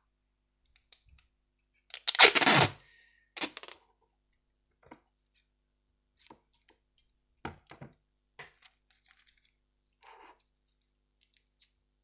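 Clear adhesive tape pulled off its roll with a loud ripping sound about two seconds in, then a second, shorter pull. After that come a few small snips and clicks as the strip is cut with scissors and handled.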